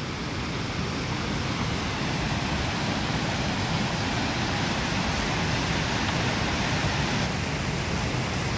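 Muddy floodwater of a swollen river rushing steadily over rocks and construction wreckage, a dense unbroken wash of water noise; it dulls slightly near the end.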